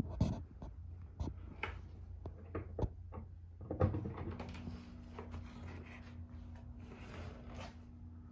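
Irregular knocks and clicks, then from about four seconds in a steady electrical hum from the ballast of a 100 W metal halide light fixture as the lamp strikes and starts warming up.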